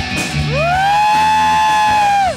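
Live rock band playing. About half a second in, an electric guitar note slides up in pitch and is then held steady over a low sustained bass.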